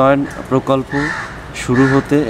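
A man speaking Bengali in short, quick phrases.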